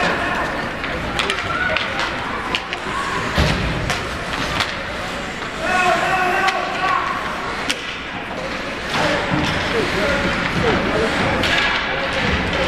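Ice hockey game sounds in an arena: scattered sharp clacks and thuds of sticks, puck and bodies against the boards, over a constant rink din, with spectators' voices calling out now and then.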